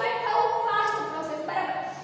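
A woman's voice talking, with some syllables drawn out long; only speech.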